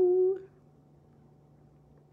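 A woman's voice drawing out the last syllable of a word on one held note, which stops about half a second in. After it comes quiet room tone with a faint steady hum.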